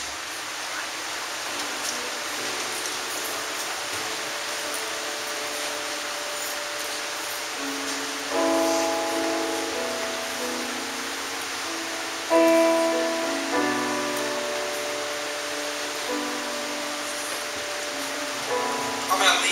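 Electric keyboard playing a slow, soft worship introduction: faint held notes at first, then a chord struck about eight seconds in and further chords every few seconds, each left ringing and fading, over a steady hiss.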